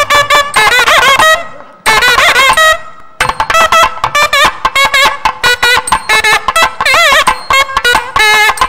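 South Indian temple music on a nadaswaram over a steady drone: a single reed melody in quick, heavily ornamented phrases with wavering pitch bends, pausing briefly about two and three seconds in.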